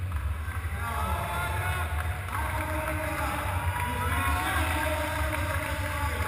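People's voices, too indistinct to make out, over a steady low rumble. The voices come in about a second in and carry on to the end.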